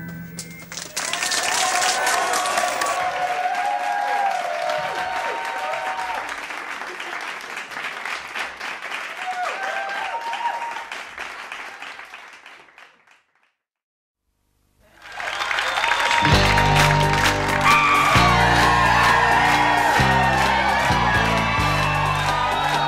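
Audience applause and cheering that fades away over about thirteen seconds, then a brief silence. Band music with a strong bass beat starts in suddenly near the end.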